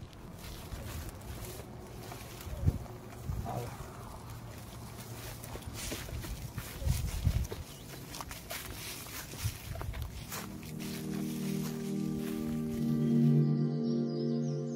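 Scattered knocks, scrapes and rustles of a cardboard box being handled, over an outdoor background. About ten seconds in, slow music with held chords fades in and becomes the loudest sound.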